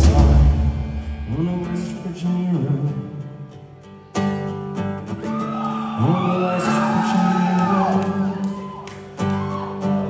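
Live indie rock band: the loud full-band sound dies away over the first few seconds, leaving strummed acoustic guitar chords, about four, six and nine seconds in, with singing over them. Heard in a large hall.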